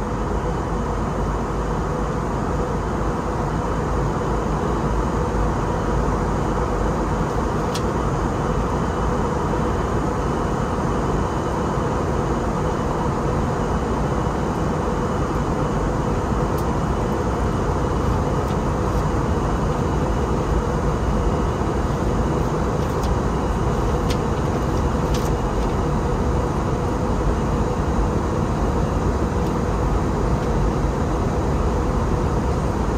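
Steady cabin noise inside an Airbus A321 airliner during descent: its jet engines and the rushing airflow, with a steady hum running through it.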